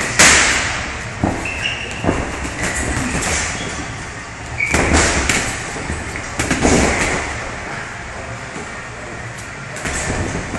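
Boxing sparring: gloved punches landing on gloves and headguards as sharp slaps and thuds at irregular intervals, the loudest right at the start, with brief high squeaks of sneakers on the ring canvas and a steady low rumble of gym noise underneath.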